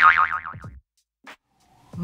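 Intro jingle sound effect: a cartoon-style 'boing' whose pitch wobbles rapidly and slides downward, with a drum-machine hit, fading out within the first second.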